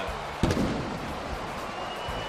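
Sharp crack of a baseball bat striking the ball about half a second in, followed by steady ballpark crowd noise.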